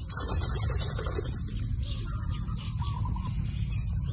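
Hands scrabbling and rustling in wet grass and mud while digging a crab out of its burrow, over a steady low rumble. A faint bird call sounds about three seconds in.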